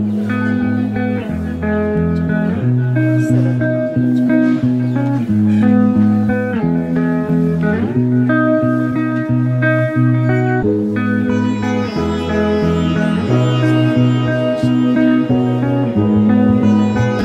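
Instrumental background music led by plucked guitar.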